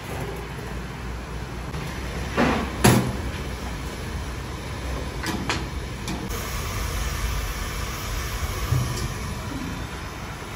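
Large steel lids on giant pulao pots being handled: two metal clanks close together about three seconds in, the second the loudest, then two lighter clinks a couple of seconds later, over a steady low rumble.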